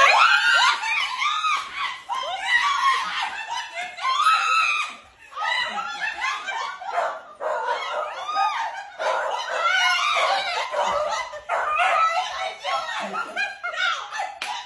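Women screaming and squealing with joy, mixed with laughter: high-pitched, near-continuous excited cries on a surprise reunion with a friend.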